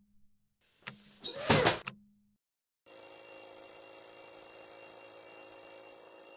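A faint click, then a single loud short hit about a second and a half in. After a moment of silence comes a steady drone with fixed high ringing tones over a low hum.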